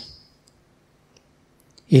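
A short pause in a man's amplified talk: near silence with a few faint small clicks, his speech trailing off at the start and starting again just before the end.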